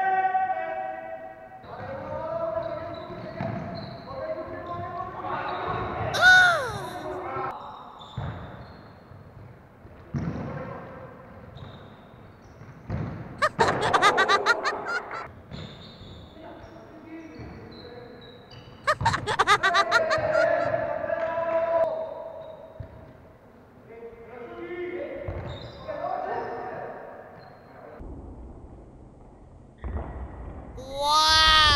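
A football bouncing and being struck, with players' voices calling out over it.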